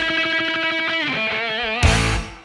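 Heavy metal band recording with no vocals: a distorted electric guitar holds a sustained note that bends down about a second in and then wavers with wide vibrato, over bass and drums. A loud full-band hit lands near the end.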